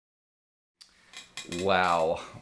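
Dead silence for most of the first second, then room sound cuts in with a few small handling clicks and a man's brief wordless voice near the end, the loudest sound.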